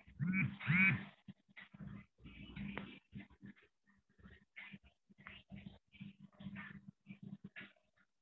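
Two short animal cries, each rising and falling in pitch, near the start, then faint scattered small sounds, heard over a video-call line.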